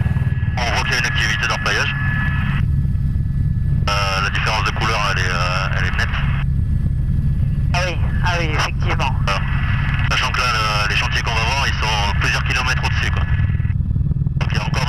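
Helicopter cabin noise: the rotor and engine give a loud, steady low drone. Voices talk over it in several stretches.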